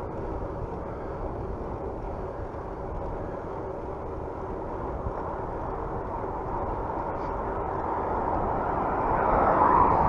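Wind rushing over the microphone and road noise from a bicycle riding along an asphalt street, a steady rush that grows louder near the end.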